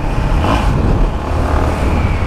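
Yamaha XT660's single-cylinder four-stroke engine running at a steady cruise, heard from a helmet camera under a dense low rumble of riding noise.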